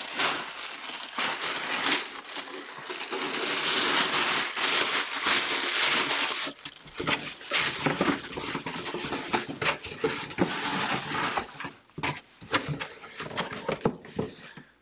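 Plastic packaging wrap crinkling and rustling as a replica football helmet and its box are handled. It is dense and continuous for about the first six seconds, then comes on and off with a few sharp knocks.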